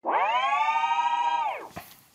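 An editing transition sound effect: one sustained tone with many overtones that rises briefly at the start, holds for about a second and a half, then bends down in pitch and fades.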